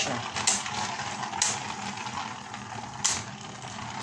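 Two Beyblade spinning tops, Winning Valkyrie and Kerbeus, whirring on a metal arena floor with a steady hiss, broken by three sharp clicks.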